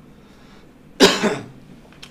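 A man coughing once, sharply, about a second in.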